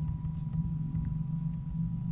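A steady low electrical hum with a thin, faint high tone over it, and a few faint computer-keyboard clicks as code is typed.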